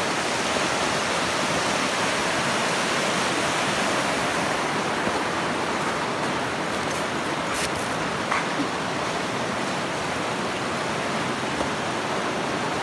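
Steady rush of a fast-flowing river over rapids.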